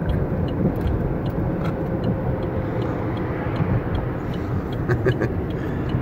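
Steady road and engine rumble inside a moving car's cabin, with a few faint clicks.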